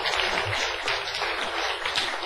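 Audience applauding, many hands clapping at a steady level.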